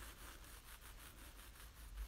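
Near silence with faint, quick scratchy rubbing noises.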